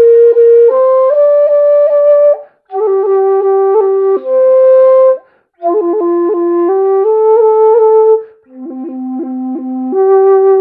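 Dongxiao, a Chinese end-blown bamboo flute in F, playing a simple melody in four short phrases with quick breaths between them. Repeated notes are re-articulated by brief finger strikes on a tone hole rather than tonguing, heard as quick flicks within held notes, and the last phrase drops to the low notes.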